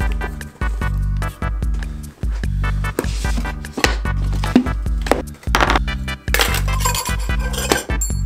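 Background music with a steady beat, over light metallic clinks of stainless-steel cocktail shaker tins being taken out of their cardboard tube box and set down on a table, mostly in the second half.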